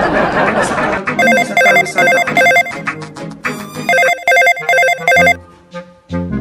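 Electronic telephone ring: a fast trilling ring in short repeated bursts, starting about a second in and cutting off just after five seconds, heard while a call is being placed.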